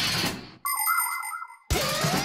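Cartoon transition sound effects: a short whoosh, then a bright chiming tone with a light warble lasting about a second. After a brief break, a rising swoop starts near the end.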